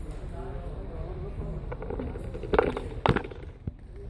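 Low voices talking in the background, then two loud knocks and rubbing about two and a half and three seconds in, as the recording phone is handled and lowered.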